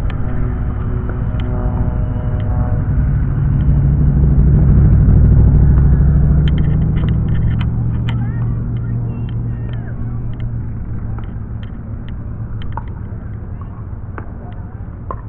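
A motor vehicle passing nearby: a low rumble that builds to its loudest about five seconds in, then fades slowly away.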